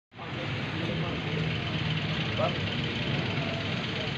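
A steady, even engine-like hum with faint voices in the background.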